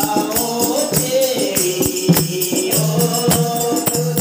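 Devotees singing a Hindi bhajan together, accompanied by hand-clapping and jingling percussion that keep a steady, quick beat.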